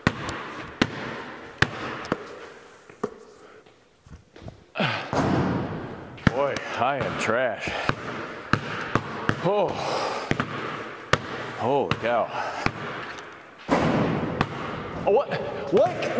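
A basketball being dribbled on a concrete floor in a large steel-walled barn, about one sharp bounce a second. Over the middle and again near the end, a person's wordless voice sounds over the bouncing.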